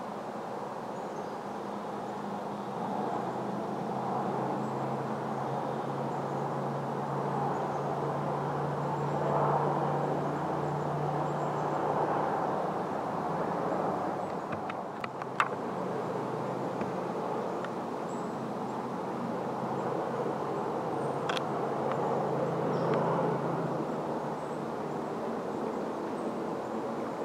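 Steady low drone of a distant engine, swelling and fading, under outdoor ambience, with a few sharp clicks about halfway through and one more a few seconds later.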